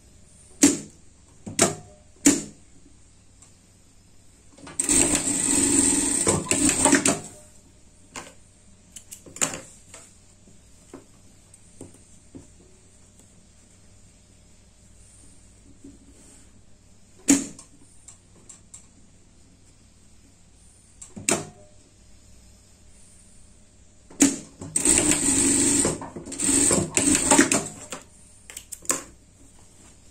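Industrial straight-stitch sewing machine running in two short bursts of two to four seconds, about five seconds in and again near the end, stitching the shoulder seams of a fabric garment. Sharp clicks and knocks come in between the runs.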